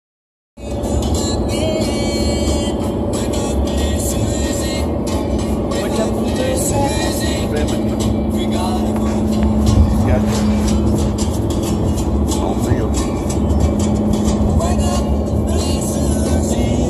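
A song with strummed guitar playing on the car stereo inside a moving car's cabin, over a steady low road and engine rumble.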